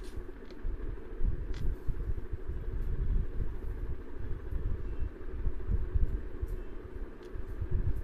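Low, uneven rumbling noise with a few faint clicks.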